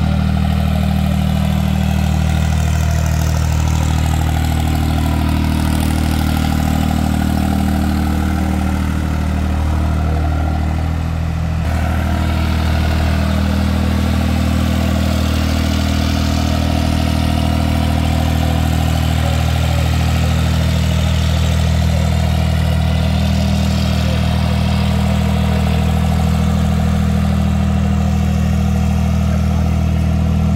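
Farm tractor's diesel engine running steadily at constant speed as the tractor circles, with a brief dip and a change in tone about eleven seconds in.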